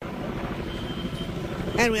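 Steady low rumbling background noise, like vehicles or machinery running, with a faint thin high whine for about half a second midway. A woman starts speaking near the end.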